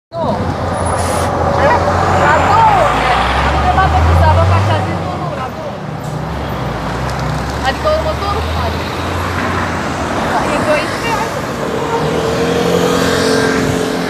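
Engine of a coach bus running close by, a low rumble that is loudest about four seconds in and fades later, with street traffic around it. Near the end a steadier hum comes in.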